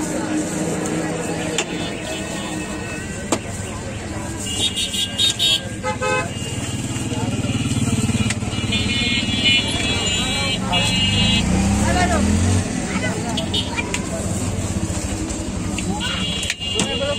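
Street traffic: a vehicle engine running past, swelling between about 7 and 12 seconds in, and horns tooting in short runs around 5 seconds and again around 9 to 10 seconds, with voices in the background.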